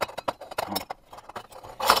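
Light metal clicks and scrapes of a stainless-steel Vietnamese phin filter's press disc being worked loose and pulled out of its chamber, with a louder clink near the end.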